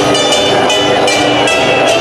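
Loud live festival band music with a steady beat of jingling percussion.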